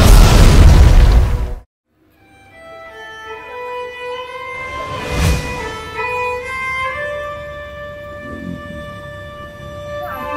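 A loud booming logo sting cuts off suddenly under two seconds in. After a brief gap, string background music fades in and carries on, with a short whooshing swell near the middle.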